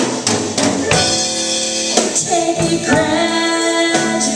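A live band playing a country song: regular drum kit hits under electric guitar and sustained melody lines, some bending in pitch in the second half.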